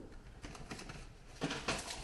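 Light rustling and a few soft clicks of plastic product packaging being handled and set down on a kitchen counter, starting about one and a half seconds in.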